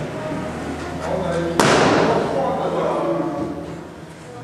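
A balloon bursts once, a sharp bang about one and a half seconds in that echoes briefly in the large hall, with people talking around it.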